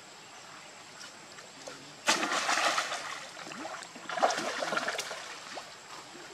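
Macaques splashing in a pool: a sudden loud splash about two seconds in, and a second bout of splashing about four seconds in, as a monkey goes into the water.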